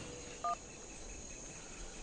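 A single short phone keypad beep, two tones sounding together, about half a second in, over a faint steady background.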